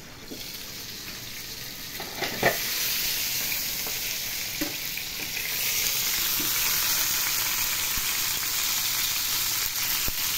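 Chicken leg pieces frying in mustard oil in a pan: a steady sizzle that grows louder over the first half, with a brief knock about two and a half seconds in. The chicken is nearly cooked through.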